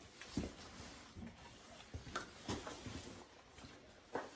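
Two puppies scuffling and play-fighting on a concrete floor: faint, scattered scrapes and soft knocks.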